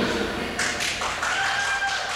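A few scattered hand claps in an ice rink, starting about half a second in and coming a few to the second.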